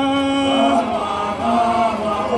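Male vocal chanting of a Zulu song into a microphone: one long held note ending about three-quarters of a second in, then further sung notes.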